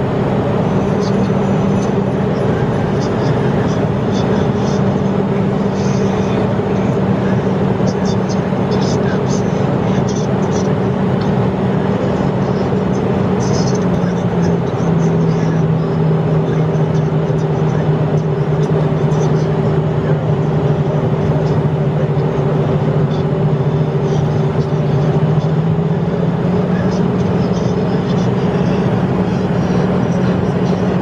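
Steady in-cabin noise of a Hawker Beechcraft 400XP business jet in cruise, from its twin rear-mounted turbofans and the rush of air: a constant roar with a steady hum that drops a little in pitch about halfway through and rises back near the end.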